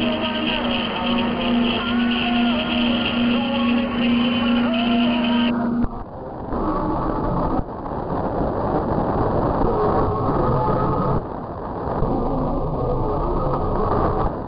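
Mediumwave AM radio reception through a KiwiSDR web receiver tuned near 774 kHz: hiss and static with a steady low heterodyne whistle and faint, wavering audio from distant stations. The receiver's filter is narrowed about six seconds in and again about eleven seconds in, each time cutting the treble and leaving a duller, noisier sound.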